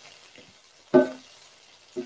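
Garlic scapes and snow peas sizzling faintly in an electric skillet as they are stirred with a spatula. A voice briefly says "hey" about a second in.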